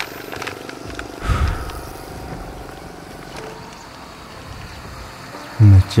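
Crinkling and tearing of a paper food wrapper being opened by hand, a few light crackles over a steady outdoor background, with one short louder sound about a second in. A man's voice begins near the end.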